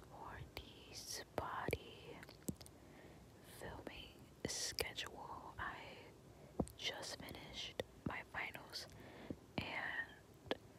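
A person whispering close to the microphone, in soft breathy phrases broken by many small clicks.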